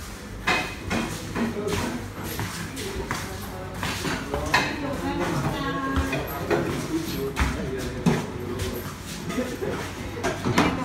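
Bowls, plates and chopsticks clinking and rattling on a tray as it is carried, with scattered knocks throughout.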